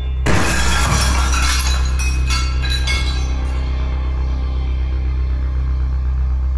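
Glass shattering about a quarter-second in, with pieces clinking and scattering for about two seconds. A steady low musical drone runs underneath.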